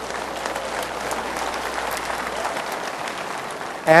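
Audience applauding steadily, with a few voices mixed in.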